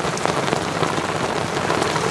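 Heavy rain falling on a sailing yacht, a steady hiss with many small drop hits.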